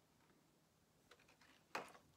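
Mostly near silence, with a few faint clicks and then one brief plastic crackle near the end as a vinyl figure is worked out of its clear plastic clamshell insert.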